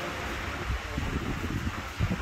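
Wind buffeting the microphone: an irregular low rumble that grows stronger in the second half, over a faint steady background hiss.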